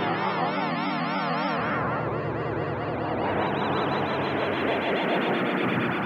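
Sustained synth pad chord through Ableton Live's Chorus at 100% wet, its pitch wobbling in a deep vibrato that gets faster as the LFO rate is turned up. At this high amount and rate the chorus sounds like LFO-to-pitch on a synthesiser. The chord changes about a second and a half in.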